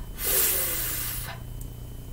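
A woman's sustained "fff" sound: the voiceless f consonant, breath hissing between upper teeth and lower lip, held for about a second, then only faint room hum.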